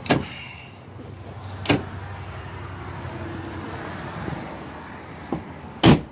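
The rear bench seat of a 2009 GMC Sierra extended cab clicking as it is folded up, then a knock a little under two seconds in, over a low steady hum. Near the end comes a loud slam as the truck's door is shut.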